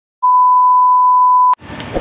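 Colour-bars test tone: one steady, loud, high beep that starts a moment in and cuts off with a click after about a second and a half. Background noise of people waiting comes in after the click.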